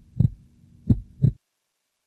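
Heartbeat sound effect: two beats, each a low double thump (lub-dub), the second beat just under a second in. The sound then cuts off to silence.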